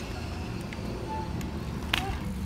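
Low, steady rumble of street background noise, with a single sharp click near the end.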